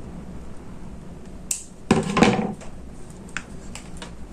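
Scissors snipping the thread on a small ribbon bow, a sharp click about one and a half seconds in, followed by a louder clatter of handling about two seconds in and a couple of faint clicks.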